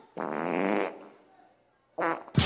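A short, buzzy, voice-like sound effect from the dance routine's playback soundtrack, lasting under a second, then fading to near silence.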